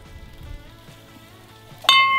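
Faint background music, then near the end a single sharp bell-like ding that rings on with a steady tone.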